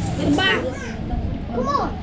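Children's voices: two short, high-pitched calls or bits of speech, one about half a second in and one near the end, over a low background hum of room noise.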